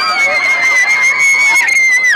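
A child's long, high-pitched squeal, held steady and dropping off at the end, over other children's excited voices.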